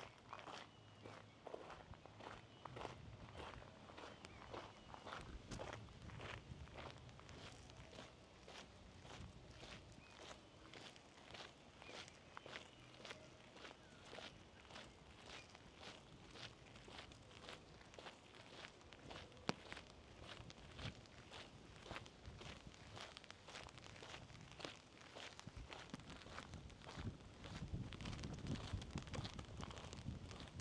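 Soft footsteps of one person walking on a park path at a steady pace, about two steps a second.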